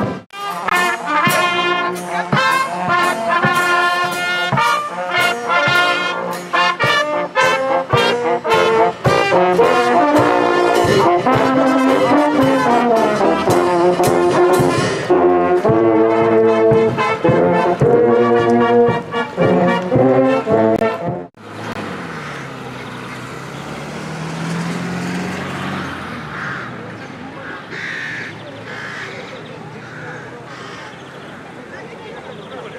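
Brass band playing a tune with a steady beat. About two-thirds of the way through the music cuts off suddenly, leaving quieter outdoor background noise with voices.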